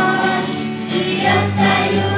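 Children's choir singing a song in unison, with sustained instrumental accompaniment underneath.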